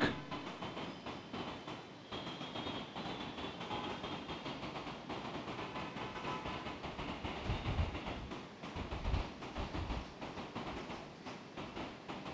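Steady background noise in a church during a pause in prayer, a faint even rumble and hiss with a few soft low thumps near the middle.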